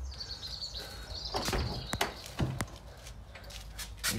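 Quiet workshop background with a few sharp clicks and knocks about halfway through as a handheld phone is moved and handled, and a faint thin high tone in the first second and a half.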